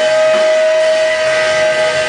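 Rock band playing live, with an electric guitar holding one long, steady high note over the band.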